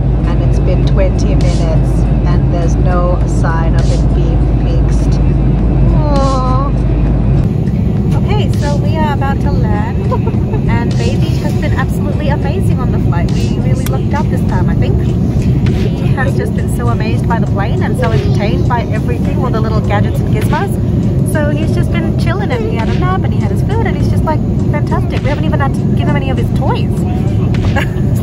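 Steady low drone of a jet airliner cabin in flight, with voices over it throughout.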